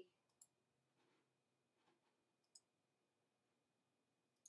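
Near silence with two faint computer mouse clicks, one about half a second in and one about two and a half seconds in.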